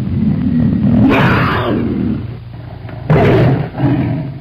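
Big-cat roar sound effect: a loud, low rumbling snarl with two harsher bursts, about a second in and about three seconds in, cut off abruptly.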